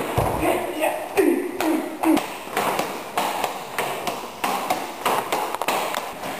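A dull thud of a body landing on a training mat at the start, then a voice briefly. After that comes a quick run of sharp slaps and knocks: forearms and gi sleeves striking each other in a karate partner blocking drill.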